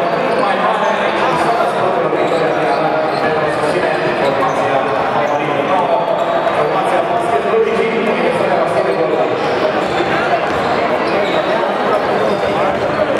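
Crowd din in a basketball hall: many spectators' and players' voices talking and calling at once, steady throughout, with the occasional thud of a basketball bouncing on the court.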